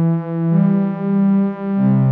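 Synth pad from the 'Tokyo Dreams' classic synth pad preset in Arturia Analog Lab V, playing sustained chords. The chord changes about half a second in and again near the end, and the volume swells and dips slowly.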